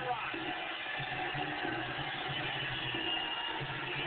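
Wrestler's entrance music playing through the arena sound system over a large crowd's steady noise.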